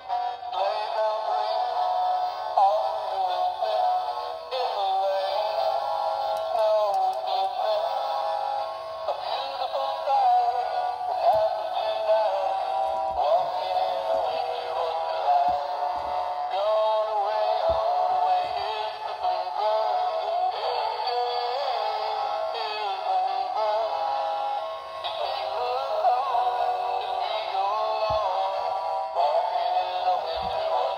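An animated Christmas figure playing its song through its small built-in speaker: a synthesized voice singing over a music track, thin and tinny with no bass.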